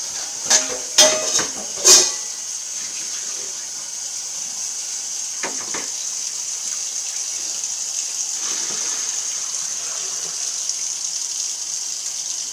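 Kitchen faucet running steadily into a stainless steel sink. Three short, loud voice sounds cut in during the first two seconds.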